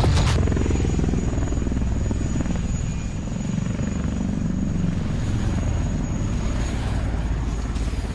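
Steady, low helicopter-like rotor and engine drone with a fast, even pulsing, used as a sound effect for an aircraft in flight.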